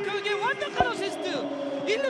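A football commentator's voice with pitch sweeping up and down as a goal is scored, and one sharp thud of the ball being struck a little under a second in.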